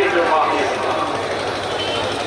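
A man's voice reciting Urdu poetry into a microphone through a public-address system, over steady background noise.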